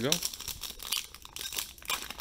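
Foil wrapper of a Donruss Optic basketball card pack crinkling and tearing as it is pulled open by hand: a rapid, irregular run of sharp crackles.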